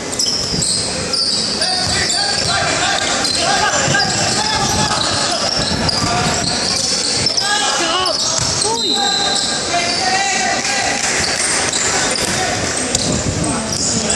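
Basketball game in a large, echoing indoor hall: the ball bouncing on the wooden court, sneakers squeaking, and overlapping shouts and chatter from players and spectators.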